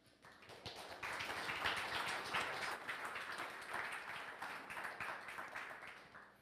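Audience applauding to welcome a speaker, rising within the first second and dying away near the end.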